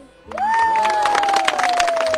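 Many people clapping fast and unevenly, with one voice holding a single long, high note that slowly falls in pitch. Both start about a quarter of a second in, after a brief lull.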